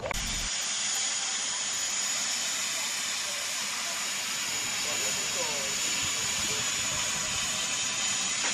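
Narrow-gauge steam locomotive standing and venting steam: a loud, steady hiss with a thin high tone running through it, no exhaust beats.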